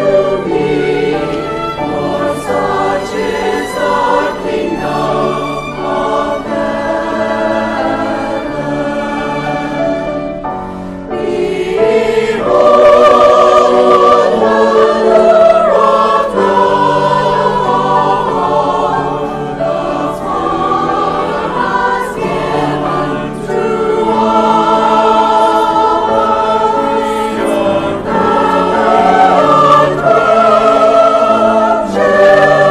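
A combined children's and adult church choir singing, with a brief lull about a third of the way in before the singing comes back louder.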